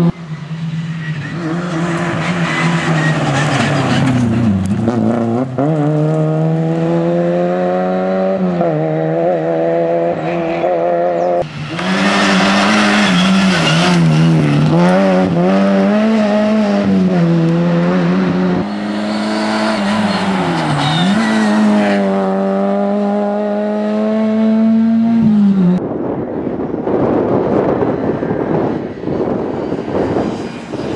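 A Škoda Felicia rally car's four-cylinder engine run hard on a special stage: the engine note climbs and drops again and again as the driver works through gear changes and lifts for bends. Near the end the engine tone gives way to a rough rushing noise.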